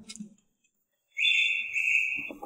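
A steady high-pitched electronic beep starts suddenly about a second in after dead silence and holds for about a second.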